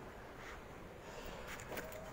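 Quiet city street background: a faint, steady hum of outdoor noise, with a couple of faint clicks in the second half.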